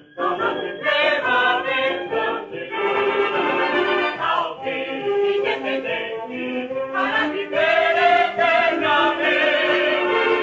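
Choir singing a football club anthem with instrumental accompaniment, resuming after a brief break between phrases.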